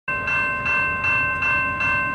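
Railroad crossing bell ringing steadily, struck about two and a half times a second, its ringing tones carrying on between strikes: the crossing signals are active for an approaching train.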